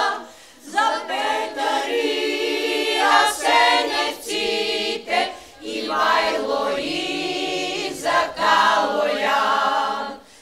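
Women's chamber choir singing a Bulgarian song a cappella, with short breaks between phrases just after the start and about midway.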